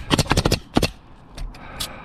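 Pneumatic coil roofing nailer driving nails through asphalt shingles: a quick run of about six shots in the first second, then two more spaced apart.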